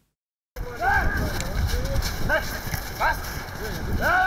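Snow rugby players roaring together in a pre-match warm-up: a string of short yells that rise and fall, over low rumbling noise. The sound cuts in suddenly about half a second in, after silence.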